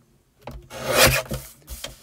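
Sheet of card stock rubbed and slid across the plastic base of a paper trimmer as it is pushed into position. The rasping swells up and fades within about a second, followed by a few light clicks.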